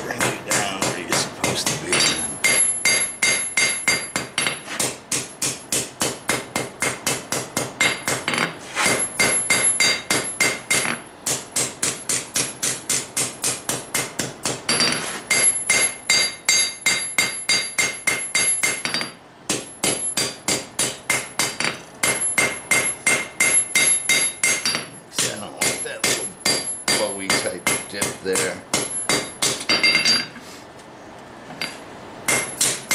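Hand hammer forging a red-hot railroad-spike knife blade on an anvil: steady blows about three a second, each with a bright metallic ring from the anvil, broken by a couple of brief pauses.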